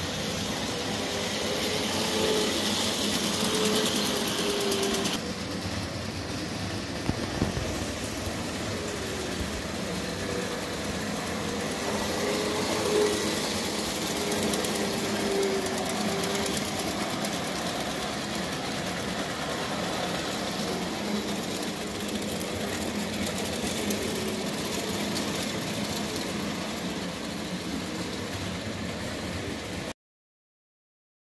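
Hornby AcHo HO-scale model locomotive running around the layout: a steady rumble and clatter of wheels on the rails, with a small motor's whine that wavers up and down in pitch. A few sharp clicks come about seven seconds in.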